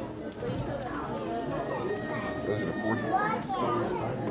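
Young children chattering and talking over one another, many small voices at once.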